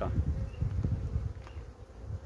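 Honeybees buzzing over an open hive: a dense, continuous hum from a colony crowded on the frames.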